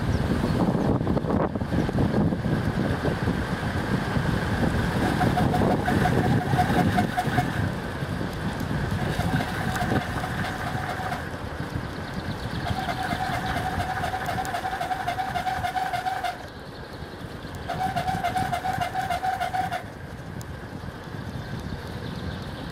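Wind buffeting the microphone and tyre rumble on asphalt on a moving bicycle, strongest in the first half. In four stretches of two to three seconds a rapid buzzing tick comes and goes: the rear freewheel ratcheting while the rider coasts.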